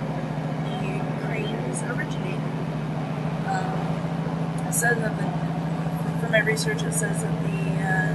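Steady low hum of a passenger train running at speed, heard from inside the carriage, under a woman's voice.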